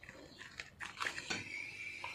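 Dog crunching and chewing raw chicken feet, a run of irregular short crunches.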